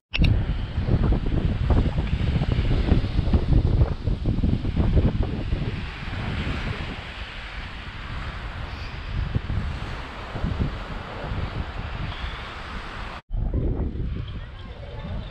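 Wind buffeting the microphone over waves washing against the boulders of a rock breakwater. The gusts are strongest in the first half and ease after, and the sound cuts off abruptly near the end.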